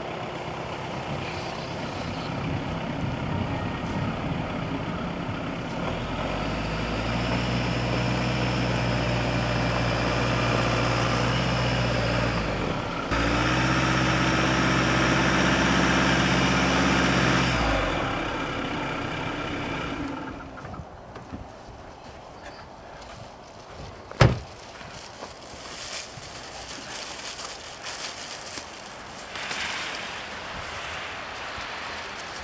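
A vehicle's engine running as it moves to roll the tyres fully into textile AutoSock snow socks. It grows louder from about six seconds in, cuts out briefly around thirteen seconds, and fades by about twenty seconds. A single sharp knock a few seconds later is the loudest sound.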